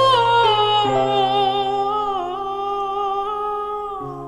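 A woman's voice singing a long wordless lullaby note with vibrato. It glides down in the first second and then holds, over sustained piano or keyboard chords.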